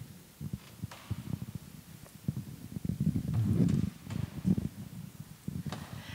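Soft low thumps and irregular rumbling of handling and movement noise picked up by the microphones, a little louder about three to four seconds in.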